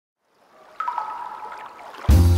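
Water sound effect: a soft watery hiss fades in, then about a second in comes a droplet plink whose tone rings on briefly and fades.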